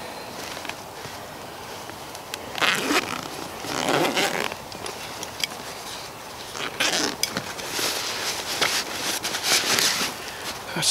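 Camping gear being handled: fabric rustling and being pulled about in several bursts, the longest near the end, with small clicks in between.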